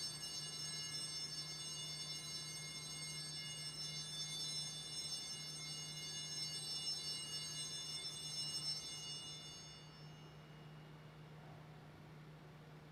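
A bell rung at the elevation of the consecrated host, its single clear ring fading slowly away until it dies out about ten seconds in, over a steady low hum.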